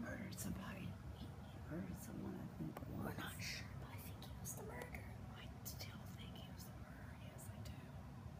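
Faint whispered speech, broken up by scattered small clicks and rustles.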